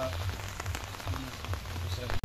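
Rain pattering steadily, with a low steady rumble beneath it.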